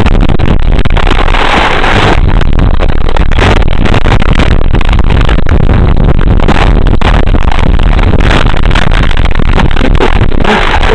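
Loud, distorted rushing noise with frequent crackles and knocks, no steady motor tone, as the model plane is handled close to its onboard microphone.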